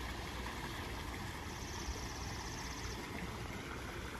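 Tiered garden fountain splashing into its pond, under a steady low rumble.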